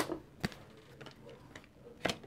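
Cards being laid down on a tabletop: a sharp tap right at the start, another about half a second in, then a few fainter taps.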